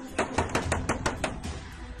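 A quick run of about eight sharp taps, roughly six a second, fading out after a second and a half.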